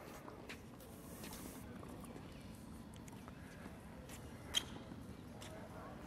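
Faint footsteps on a hard tennis court with a few scattered light taps, the sharpest about four and a half seconds in.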